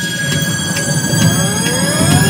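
Logo-animation sound effect: a riser of slowly climbing tones over a dense low rumble, with regular ticks about twice a second, growing louder.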